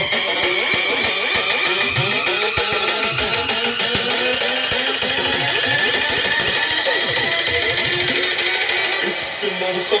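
DJ music played loud over a large street sound system, full of gliding pitch sweeps; near the end the treble cuts out.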